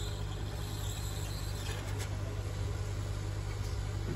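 Hot air rework gun running over a circuit board: a steady low hum from its blower with a soft hiss of air, heating the board to work an IC.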